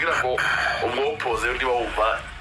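A voice speaking, narration with a slightly radio-like sound.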